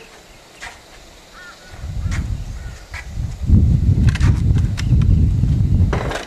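Low, fluctuating rumble on the microphone that builds about two seconds in and is strongest in the second half, with a few faint sharp clicks over it.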